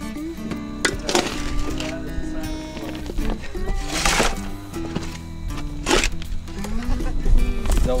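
Background music, with a few sharp strikes of a hand post-hole digger jabbing into the soil, the loudest about four seconds in and again near six seconds.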